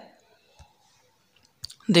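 A pause with a faint click about half a second in and two sharper clicks about a second and a half in, then a man's voice starts speaking near the end.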